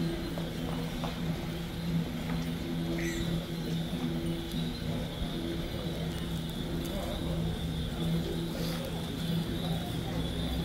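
Outdoor street ambience: indistinct voices under a steady low hum that fades in and out, with a faint steady high whine.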